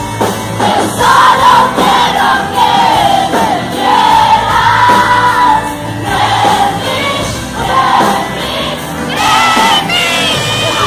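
Live pop music: a woman sings the lead over a full band with drums and keyboards, with the audience singing along, recorded from within the crowd.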